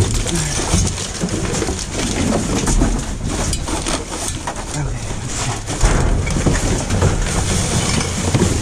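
A gloved hand rummaging through trash in a dumpster: plastic bags, wrappers and cardboard rustling and crinkling without a break, with knocks and a few heavier thumps as items are shifted.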